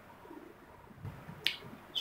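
A pause in speech: quiet room tone with a single short, sharp click about a second and a half in.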